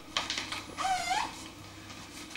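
A short creaky squeak about a second in, like a wooden chair creaking as a seated person turns, with a few faint handling clicks just before it.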